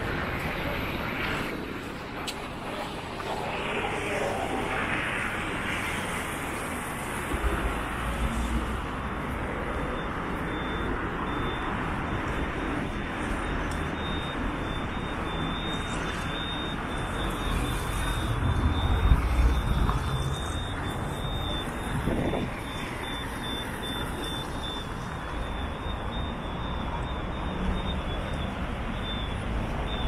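City street traffic: steady road noise from cars driving on a wide multi-lane road. Vehicles pass with louder rumbles about a quarter of the way in and again, most loudly, around two-thirds of the way through.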